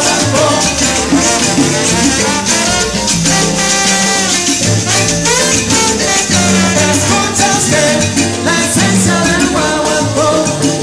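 Live salsa band playing at full volume, with trombone, hand percussion and singing over a steady bass pattern.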